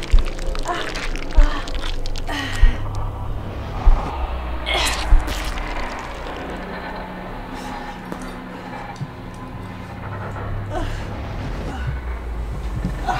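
Horror film score: a low droning music bed with five deep booms about a second and a quarter apart over the first five seconds. Over it come a woman's pained gasps and cries. After that the drone carries on alone, quieter.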